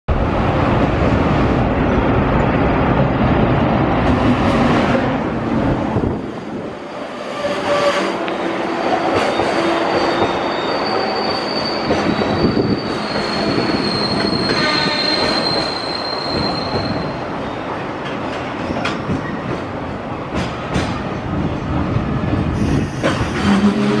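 JR Freight EF210 electric locomotive passing at speed, its low rumble loudest in the first six seconds. A long string of container wagons follows, rolling by with wheels clattering over rail joints and a thin, high wheel squeal partway through.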